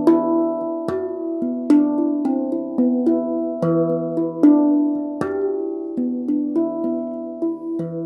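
Steel handpan in E minor played with the hands: a flowing run of struck notes that ring on and overlap, mixed with sharper taps, melody and rhythm at once. The last notes ring out and fade near the end.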